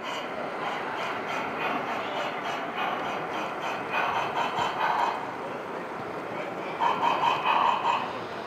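A model steam locomotive running on a layout, giving a rhythmic chuffing a few beats a second over the background noise of a busy hall, which swells near the end.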